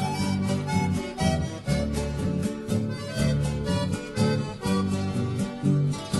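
Instrumental break in a Brazilian sertanejo (música caipira) song, with no singing: a steady strummed guitar rhythm over a walking bass, with a reedy lead melody on top.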